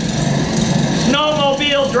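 Small snowblower engine running steadily in the background, played as a stage sound effect, with a man's voice coming in over it about halfway through.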